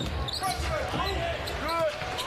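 Basketball being dribbled on a hardwood court, over the general noise of an arena crowd.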